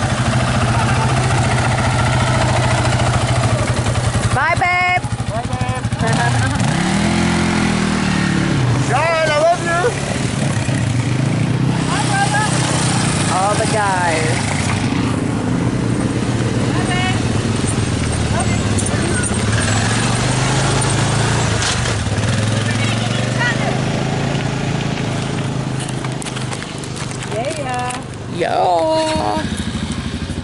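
Quad (ATV) engines, among them a Polaris sport quad, running steadily at low speed, with one rev rising and falling about seven seconds in.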